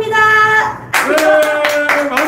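A voice holds one long note, then from about a second in comes rapid hand clapping, about six claps a second, with voices holding notes over it.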